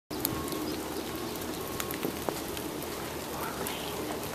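Steady rain falling on wet leaf litter and shelter boxes, with scattered sharp drip ticks through it.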